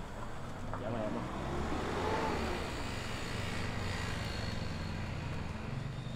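A motor vehicle passing, its noise swelling to a peak about two seconds in and then fading, over a low steady rumble.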